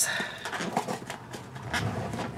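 Soft rustling, scraping and light taps of a cardboard box being handled and opened by hand.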